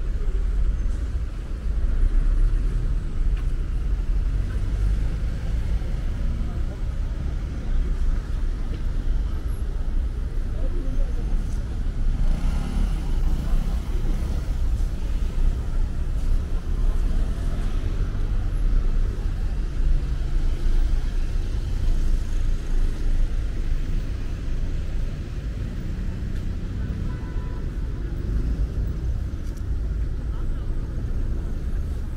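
City street ambience: road traffic running steadily past, with indistinct voices of people nearby. A continuous low rumble dominates throughout.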